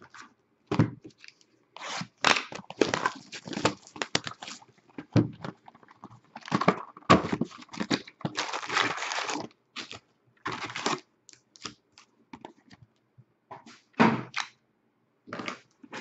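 Foil-wrapped Upper Deck hockey card packs and their cardboard hobby box being handled: irregular crinkling and rustling with light knocks as the packs are pulled out and stacked.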